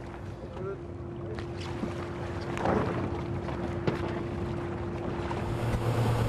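Boat engine running steadily with a held hum, over sloshing water and wind on the microphone, with a couple of faint knocks.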